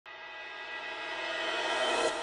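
Intro sound effect: a sustained electronic chord-like tone swelling steadily louder over two seconds, a riser building up to the intro music.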